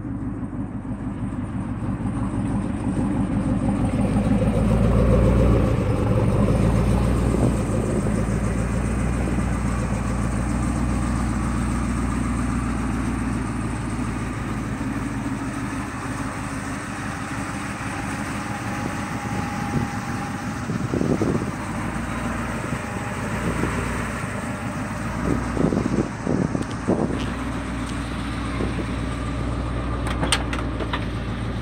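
1979 Ford F150 pickup's engine idling steadily, louder for a few seconds about five seconds in. A few short knocks come near the end.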